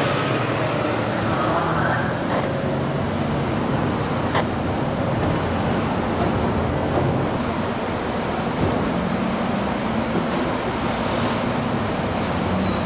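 Steady road traffic noise with the low hum of vehicle engines running.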